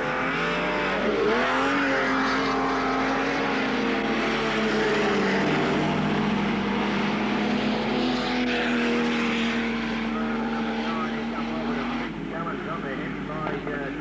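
Dirt-track stock car engines running hard as a pack of cars laps the oval, one steady engine note dominating with a dip and rise about a second in. A man's voice comes in near the end.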